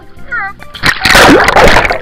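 Pool water splashing loudly, starting about a second in and continuing to the end.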